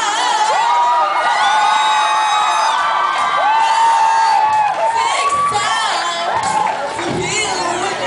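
A woman singing live through a microphone and PA, holding long high notes, while the audience cheers and shouts.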